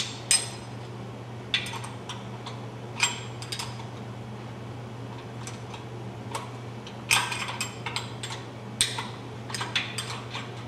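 Scattered sharp metallic clicks and clinks of a wrench working the cam bolt on a Kohler single-cylinder engine block, snugging it back up after the cam has been set, with a quicker run of clicks about seven seconds in. A steady low hum runs underneath.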